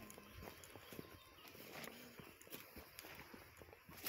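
Very faint, irregular footsteps and small clicks of a person walking, barely above near silence.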